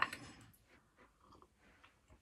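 The last of a spoken word, then faint, scattered small clicks and rustles of handling at a table.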